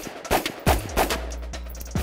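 Carbine shots fired about three a second, each a sharp crack, over background music with a steady bass line.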